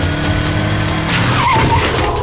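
Motorcycle engine running, then a tyre skid squeal from about one and a half seconds in.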